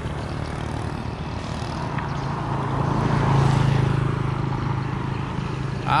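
A motor vehicle passing on the road: a steady engine hum with tyre noise that builds to a peak about three seconds in and then fades.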